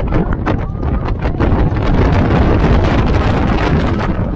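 B&M hyper coaster train running at speed on its steel track: a steady rush of wind over the microphone with a rapid, irregular clatter and rattle from the train throughout.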